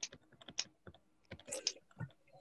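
Faint, irregular clicks of keys being typed on a computer keyboard, with a quick run of keystrokes near the end.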